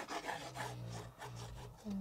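Tip of a squeeze bottle of white craft glue scraping and rubbing across kraft cardboard as glue lines are drawn, a quick run of faint scratchy strokes. A low steady hum follows in the second half.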